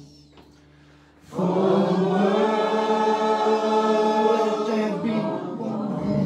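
A group of voices singing together: after a short hush, one long note held for about three and a half seconds, then a change to another note near the end.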